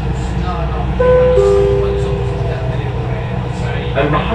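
Metro train running with a steady low rumble heard from inside the carriage. About a second in, a two-note falling chime sounds and is held for about a second and a half: the onboard signal before the next-station announcement.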